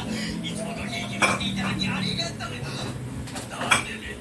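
An electric fan's steady low hum, with two sharp clinks, about a second in and near the end, and indistinct voices in the background.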